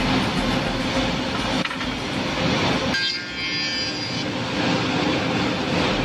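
Two-ended CNC tenoning machine running: the steady, dense noise of its spindle motors and cutter heads. About halfway through, a higher whine with several steady tones for a second or so.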